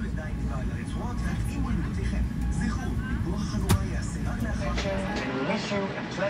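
Boeing 787-9 cabin sound while taxiing: a steady low rumble that eases about five seconds in, with indistinct voices and faint music over it and a single sharp click past the middle.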